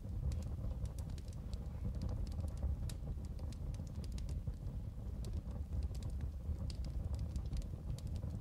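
Crackling fire: irregular small pops and snaps over a steady low rumble.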